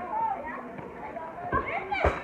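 Children's voices calling out during play, with a few dull thumps near the end.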